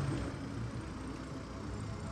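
Steady low hum of idling engines in stopped road traffic, a heavy truck close by.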